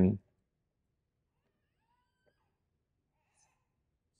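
A man's spoken word trails off at the very start, then near silence: room tone with only a few faint, brief sounds around the middle.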